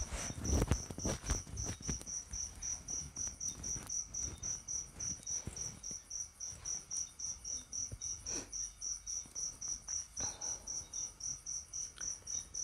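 A cricket chirping steadily, about three short high chirps a second, with a few soft low thumps in the first two seconds.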